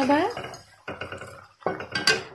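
Wooden spatula stirring paneer cubes through thick green masala in a metal kadai, giving a few short scrapes against the pan.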